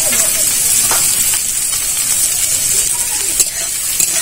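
Sliced onions sizzling in hot oil in an aluminium kadai, with a steady high hiss. A metal spatula knocks and scrapes against the pan a few times, most sharply about three and a half seconds in.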